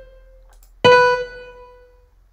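Noteflight's built-in piano sound playing back single notes as they are entered into the score. The tail of one note fades over the first half second. A second note of about the same pitch then strikes just under a second in and dies away.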